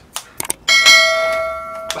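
A few short clicks, then a bell struck once about two-thirds of a second in. It rings with several steady overtones, fades slowly, and cuts off abruptly near the end.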